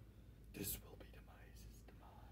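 Faint whispering from a person, with one short breathy hiss about half a second in.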